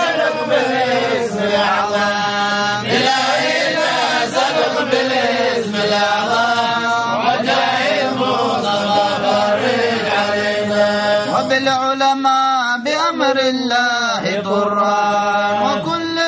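Men's voices chanting Arabic devotional verses in a drawn-out melody with long held, wavering notes.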